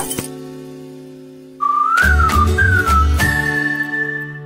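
Cartoon music: a music cue hits and fades away. About one and a half seconds in, a short whistled jingle starts over a bouncy bass beat, its tune sliding up and down and ending on a long held high note. It is the title sting between episodes.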